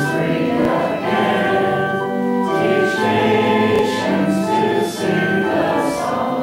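A church congregation singing a canticle together, held sung notes moving from one to the next without a break.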